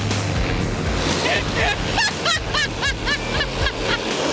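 Rushing water and sea spray as a hydrofoil speedboat slams through choppy waves. From about a second in, a person laughs hard, about four quick rising-and-falling cries a second.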